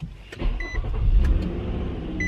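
A car engine starts about half a second in and settles into a steady low idle. A short, high electronic chime beeps near the start, and again just after.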